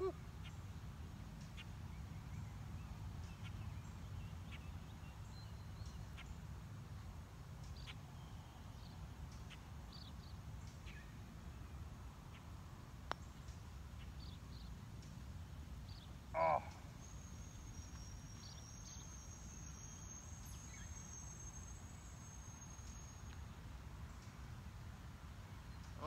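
Quiet outdoor ambience with a low steady rumble; about thirteen seconds in, a single light click of a putter striking a golf ball. A short call follows about three seconds later, then a faint high steady tone for several seconds.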